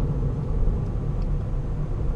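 Steady low rumble of a car's engine and tyres, heard from inside the cabin as the car slows gently under light braking.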